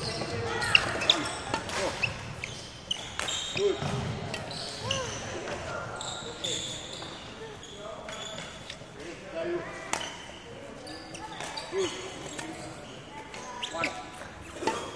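Badminton rackets hitting shuttlecocks, single sharp hits a second or more apart, mixed with footsteps and shoe squeaks on a sports hall court, echoing in the large hall.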